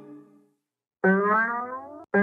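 Cartoon music sound effect: a note dies away at the start, then about a second in a pitched tone with rich overtones slides steadily downward for about a second.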